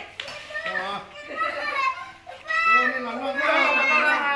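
Several people talking over one another, with children's high voices among them.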